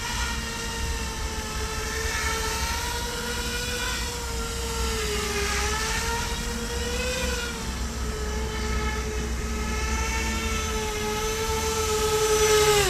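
The twin electric motors and propellers of a Z-2 bicopter RC model in flight make a steady whine. The pitch dips slightly about halfway through and rises again a couple of seconds later as the throttle changes.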